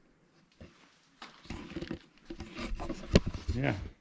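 Handheld camera being turned around: rubbing and rustling handling noise with a few clicks and one sharp knock about three seconds in. A short spoken "yeah" follows near the end.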